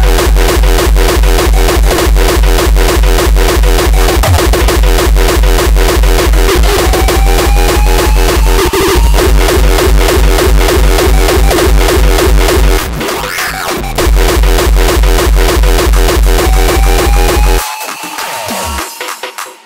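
Uptempo hardcore electronic dance track: a fast, heavy kick drum at about four beats a second under synths, with a rising synth line twice. The kick drops out for about a second about two-thirds of the way through, and again just before the end.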